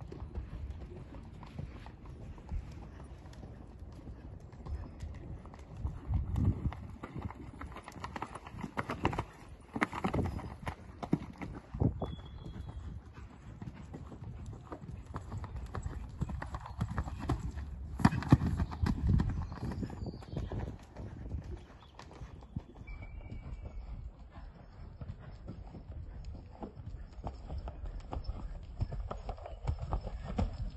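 Hoofbeats of a ridden horse on sand arena footing, moving at trot and canter in a running rhythm, with a few louder thuds, the sharpest about eighteen seconds in.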